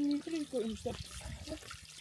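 Water trickling and running through the stone trough and channel of an old spring-fed village fountain, under a man's voice talking.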